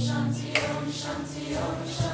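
A group chanting a mantra together, held low notes sung over a live acoustic band with strummed guitars. A sharp strike about half a second in and another at the very end.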